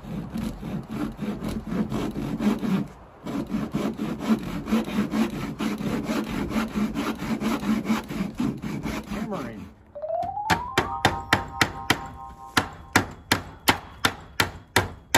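Hand saw cutting a wooden board in quick, even strokes, about four a second, with a short pause about three seconds in. About ten seconds in it gives way to steady hammer blows, about three a second, with a ringing tone from the struck metal.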